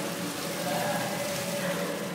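Water poured from a metal pot splashing steadily over a stone Shiva lingam.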